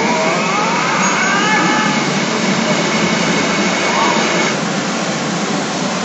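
The CR Garou Densetsu Sougeki pachinko machine plays its reach sound effects and voice, with gliding, voice-like sounds in the first two seconds. A loud, steady din runs underneath the whole time.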